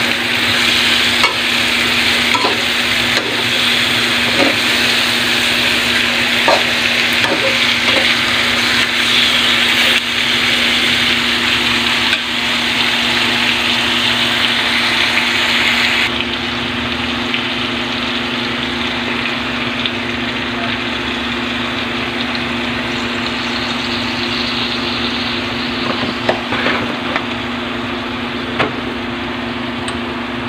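Pork pieces sizzling as they fry in a wok, with a spatula stirring them and knocking against the pan now and then; a steady low hum runs underneath. About halfway through, the sizzle turns quieter and duller.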